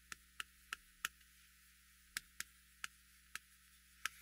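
Chalk tapping and striking on a chalkboard as words are written: about eight short, sharp clicks at uneven intervals, with near silence between them.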